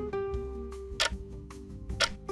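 Countdown background music: a plucked-string tune with a sharp tick about once a second, timing the answer period.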